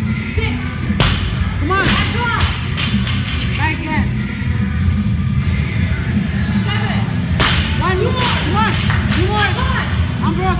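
Loud gym music with a heavy steady bass. A loaded barbell with rubber bumper plates is dropped onto the gym floor with a sharp crash about a second in and again about seven and a half seconds in, each followed by a few smaller knocks as it settles.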